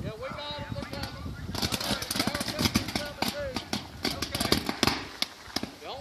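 Electrical fire crackling and popping in a dense, irregular run of sharp pops, starting about a second and a half in, with faint voices underneath.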